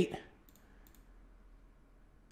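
A few faint, sharp computer mouse clicks in near silence, just after a voice cuts off.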